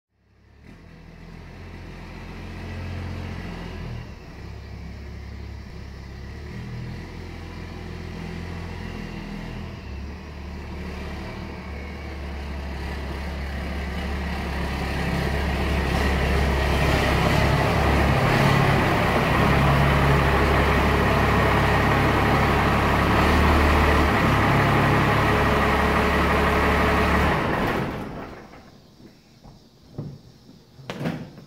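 Pickup truck engine running, growing louder over the first half with its pitch shifting in steps, then shut off about two seconds before the end.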